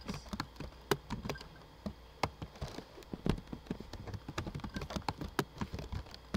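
Computer keyboard typing: irregular keystroke clicks, several a second.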